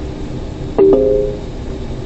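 A short electronic alert chime from a navigation unit: a few tones sounding together about a second in and fading quickly, over the steady hum of the truck's engine and tyres on the snowy road.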